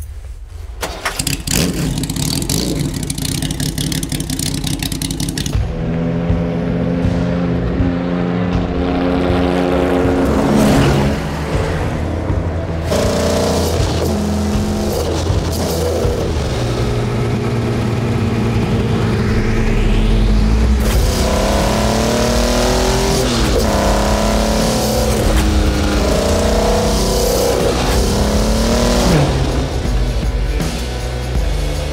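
Jaguar XKSS's straight-six engine being started, then running and revving as the car drives, its pitch rising and falling again and again. Music plays underneath.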